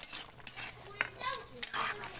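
A metal ladle clinking and scraping against a large metal wok as a simmering pork stew is stirred, with a few sharp clinks spaced a fraction of a second apart.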